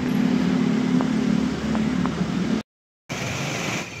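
A car engine idling close by, a steady low hum, that cuts off abruptly after about two and a half seconds. After a brief silence, noisy street traffic follows.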